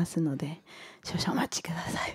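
A woman speaking into a microphone.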